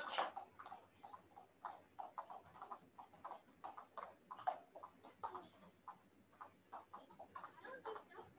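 Several jump ropes slapping a foam mat with feet landing, heard as faint, irregular light taps, several a second.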